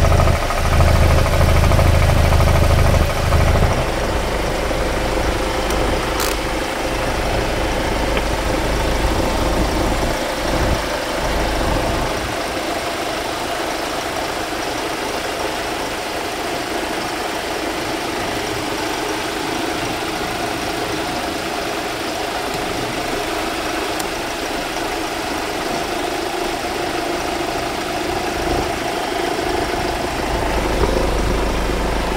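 Hyundai Starex CRDi diesel engine idling steadily with its oil filler cap off, with a deeper rumble for the first few seconds.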